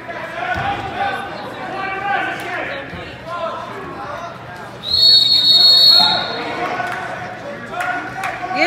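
A single shrill referee's whistle blast lasting about a second, a little past halfway, the loudest sound, over spectators' voices calling out in a large gym.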